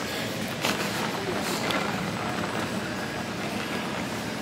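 Steady background noise of a big indoor store, with faint distant voices.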